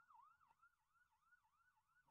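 Near silence, with a very faint electronic siren warbling fast, about three swoops a second, through the whole pause.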